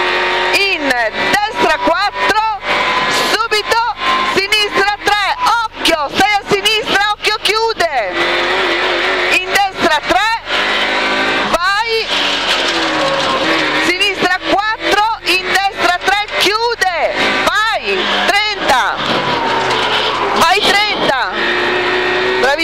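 A co-driver calling pace notes in Italian over the Rover 216 rally car's engine running hard in the cabin, its revs rising and falling with the gear changes.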